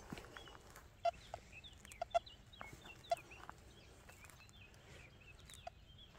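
Faint clucking of chickens and scattered chirps of small birds, a few short calls every second or so over a quiet background.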